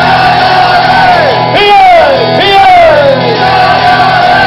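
Live folk song: male voices singing three long notes that each slide downward, over strummed acoustic guitar and bass guitar.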